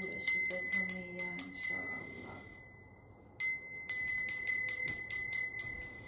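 A small hand bell rung rapidly, about four or five strokes a second, in two bouts: the first dies away about two seconds in, and after a short pause the ringing starts again and runs on until near the end.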